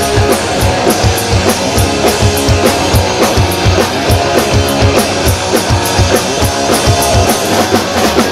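Live punk rock band playing an instrumental passage: electric guitar, bass guitar and a drum kit keeping a fast, steady beat.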